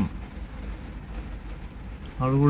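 Steady low rumble inside a van's cabin: the vehicle's engine running.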